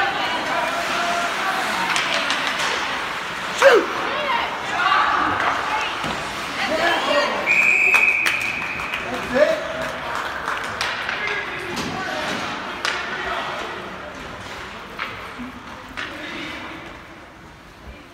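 Ice hockey game sounds in a rink: spectators talking and calling out, and sharp knocks of sticks and puck. About seven and a half seconds in, a referee's whistle sounds once, briefly, stopping play.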